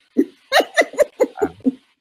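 A person laughing: a quick run of about seven short bursts of laughter in under two seconds.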